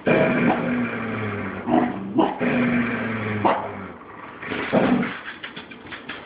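Two dogs playing tug-of-war with a plush toy, growling in a long low rumble for the first few seconds, with a few short sharp barks breaking in.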